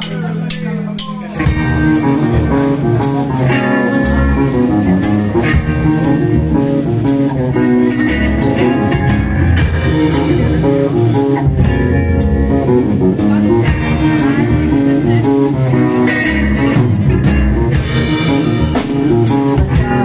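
Live band of electric guitar, bass guitar and drum kit coming in together with a sudden loud entry about a second and a half in, after a quieter held note, then playing on with steady drum hits.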